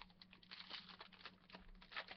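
Foil wrapper of a Sterling football card pack crinkling faintly as it is peeled open by hand, a quick run of small crackles.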